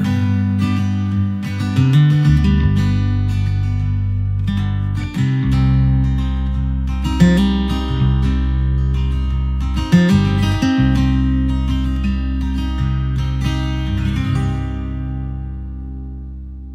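Acoustic guitar playing the instrumental close of a song, picked notes over sustained low notes, dying away near the end.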